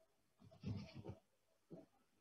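A faint, brief wavering voice about half a second in, lasting about half a second, with a tiny trace near the end; otherwise near silence.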